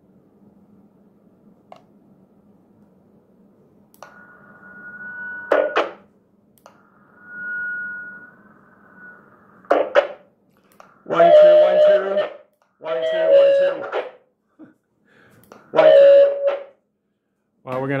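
Two-way radio audio from the walkie-talkie and wireless intercom speakers. A faint low hum comes first, then two stretches of radio hiss carrying a steady whistle tone, each ending in a click. Near the end come three loud, harsh bursts of about a second each, loud enough that the speakers' volume has to be turned down.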